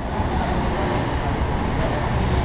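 Steady drone of road traffic on the elevated roadway overhead, with no pad strikes standing out.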